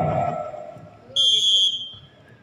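A volleyball referee's whistle: one high-pitched blast of about half a second, a little over a second in, signalling the serve.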